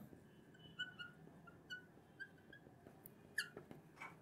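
Faint felt-tip marker squeaks in short chirps as it writes strokes on a glass lightboard, with one longer rising squeak near the end.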